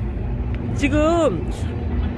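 A person's voice giving one short exclamation, its pitch rising then falling, about a second in, over a steady low outdoor rumble.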